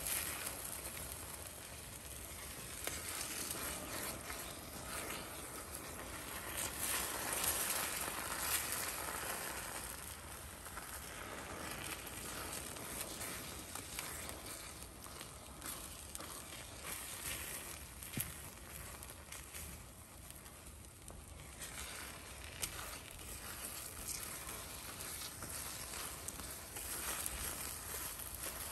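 Beaten eggs sizzling in a frying pan while being stirred and scrambled with a silicone spatula, with occasional light scrapes and taps of the spatula against the pan.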